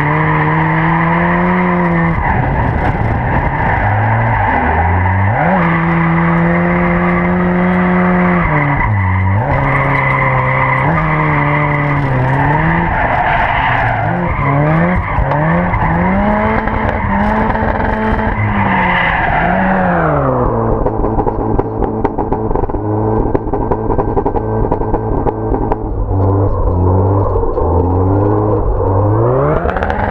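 Supercharged Mazda MX-5 Mk1 four-cylinder engine revving hard, its pitch rising and falling again and again, over the screech of the rear tyres sliding as the car drifts. About twenty seconds in the tyre noise drops away and the engine settles lower, then revs up again near the end.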